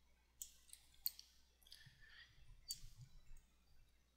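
Near silence with a few faint computer mouse clicks and small handling sounds, the sharpest about a second in.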